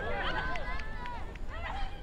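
Several raised, high-pitched voices calling and shouting over one another, with a couple of sharp ticks and a low steady rumble underneath.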